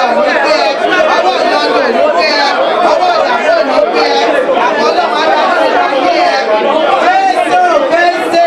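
Many people praying aloud at the same time, a dense mass of overlapping voices with no pauses.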